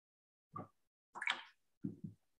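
Watercolour brush dipped and rinsed in a container of water: three short watery plops, the middle one the loudest and brightest.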